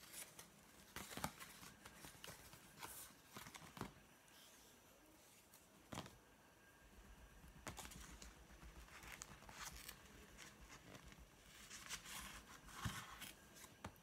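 Faint rustling of wool yarn and a paper plate being handled while strands are threaded and knotted, with a few light clicks and taps scattered through.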